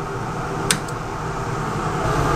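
Steady mechanical hum, like a running fan or ventilation, with a single sharp click a little under a second in.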